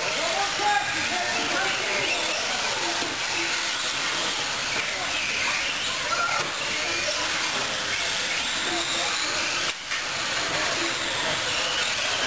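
Electric 1/10-scale R/C buggies and trucks racing: a steady high whine of their electric motors, wavering in pitch with throttle, over an even hiss, with a short dip a little before the end.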